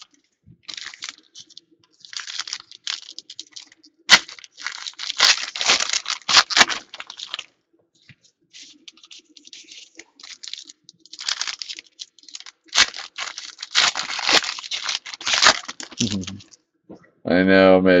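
Football trading-card packs being torn open by hand and their wrappers crinkled, in two bouts of ripping and rustling, each starting with a sharp crack.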